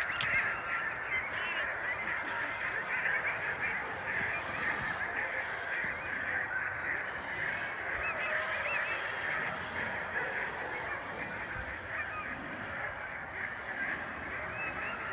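A steady chorus of many Alaskan husky sled dogs yelping and barking together at a sled dog race start, many short overlapping calls with no pause.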